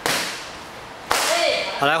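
Two sharp slaps of karate kicks striking a handheld kick paddle, one at the start and one about a second later, each fading quickly in the hall.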